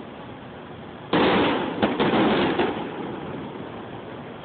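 Fireworks exploding: a sudden loud burst about a second in, two more sharp bangs close after it, then the noise dying away. Recorded through a phone's microphone, so the sound is thin, with no top end.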